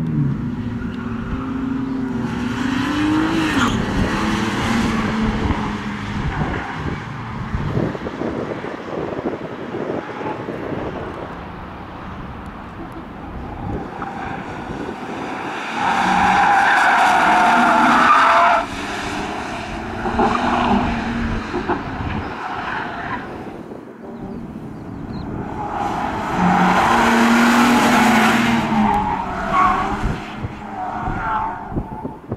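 BMW E46 saloon's engine revving hard and rising and falling in pitch as it is driven flat out through a cone course. The tyres squeal loudly in tight turns, once about halfway through and again near the end.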